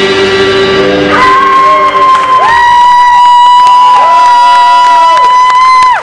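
Electric guitar through an amplifier at the end of a song. The band's last chord rings for about a second, then a high, steady feedback tone holds for about five seconds while lower guitar notes swell and bend beneath it. It cuts off suddenly at the end.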